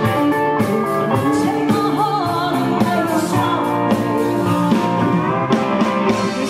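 Live country band playing, with electric guitars and drums.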